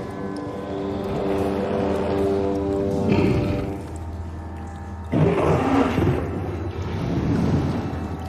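Ominous film score with long held tones. About five seconds in, a loud, rough, rumbling growl cuts in: the movie sound effect of the giant mutant crocodile.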